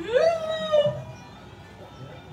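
A woman wailing: a long cry that leaps sharply up in pitch at the start, is held high for about a second, then breaks off.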